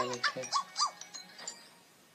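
Cartoon soundtrack: a brief vocal sound, then a few short high squeaks that rise and fall in pitch, dying away about a second and a half in.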